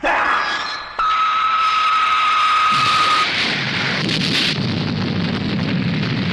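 Monster-film battle sound effects: a sudden blast, then a steady high electronic tone held for about two seconds, then a long rumble like an explosion.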